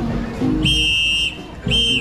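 A shrill whistle blown twice: a steady blast of just over half a second, then a shorter one near the end, over marching-band music.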